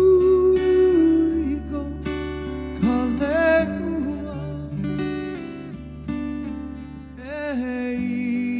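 Strummed acoustic guitar with a man's voice holding long wordless notes over it.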